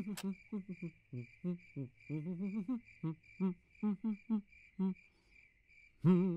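Crickets chirping in a steady pulsing rhythm, with a man humming a bouncy tune in short notes over them until about five seconds in.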